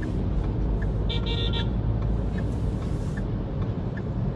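Steady low road and engine rumble heard from inside a car, with a short car horn toot lasting about half a second just after one second in.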